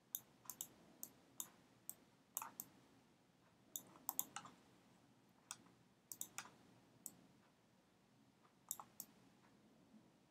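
Computer mouse clicking sharply and irregularly, many clicks in quick pairs, over quiet room tone.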